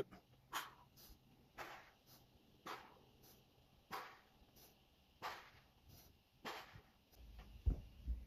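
A man's short, sharp exhalations while shadowboxing, one breath pushed out with each punch, six of them at roughly one-second intervals. A low thump comes near the end.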